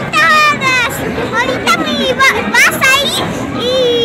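Children's high-pitched voices squealing and shouting, with sharp rising and falling cries, over crowd chatter.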